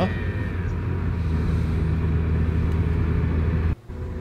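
Car driving at speed, heard from inside the cabin: a steady low engine and road rumble that cuts off suddenly near the end.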